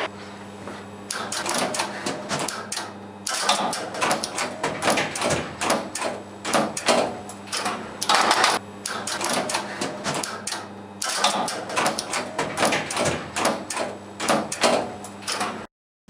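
Electromechanical relays in an Express Lift relay-logic controller cabinet clicking and clacking in quick irregular runs with short lulls as they pull in and drop out while the lift answers a call, over a steady low electrical hum.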